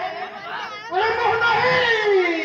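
A man's voice declaiming stage dialogue in a drawn-out, sing-song way, with long held and gliding pitches, a short dip about half a second in and a slow falling glide near the end.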